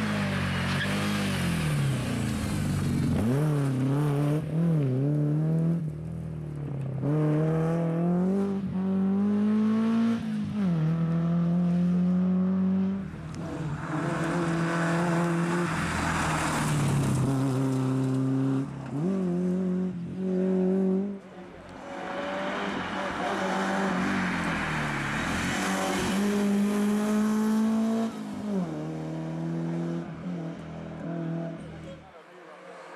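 BMW 3 Series (E36) rally cars driven hard on a stage, their engines revving up through the gears with the pitch climbing in each gear and dropping at every upshift. Several passes follow one another, with a brief lull between them.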